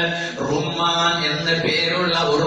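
A man's voice chanting in a drawn-out, melodic recitation style, as delivered in an Islamic sermon.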